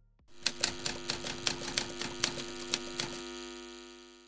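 Typewriter sound effect: rapid key clacks, several a second, over a sustained low chord. The clacking stops about three seconds in and the chord rings on and fades.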